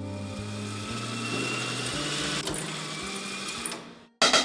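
Motorized microfilm reader winding film between its reels: a steady whirring hiss that fades out near the end.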